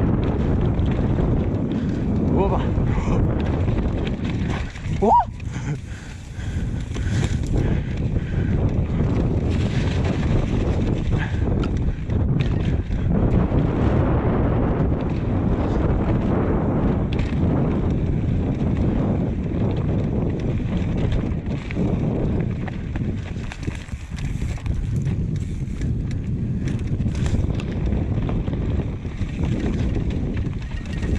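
Wind buffeting the microphone of a camera on a fast downhill mountain-bike descent, over the steady rumble of knobby tyres on a dirt trail and the bike rattling over roots and bumps. A brief rising squeal comes about five seconds in.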